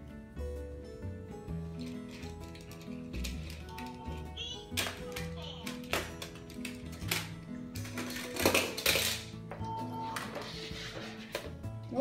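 Light background music runs throughout, with a few sharp knocks from plastic toys being handled around the middle and brief toddler vocal sounds.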